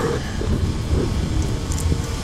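Wind buffeting an action-camera microphone on open water, a steady low rumble, with background music faintly underneath.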